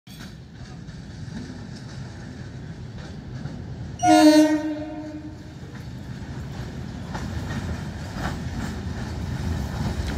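Approaching Indian Railways EMU local train: its horn sounds once, loud, for about a second and a half, about four seconds in. Then the low rumble of the train on the rails grows steadily as it draws near.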